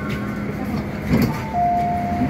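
MTR M-Train passenger doors opening at the station: a clunk from the door gear about a second in, then the door chime, a short higher note followed by a longer lower one.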